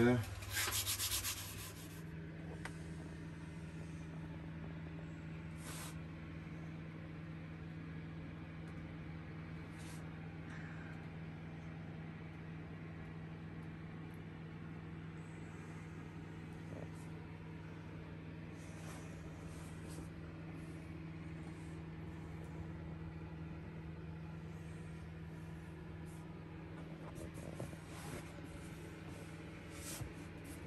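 A short burst of rubbing in the first second or two, then a steady low hum, with a few faint clicks.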